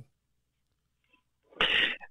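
Dead silence for about a second and a half, then a single short, noisy burst of breath from the man at the microphone, sneeze-like, just before he speaks again.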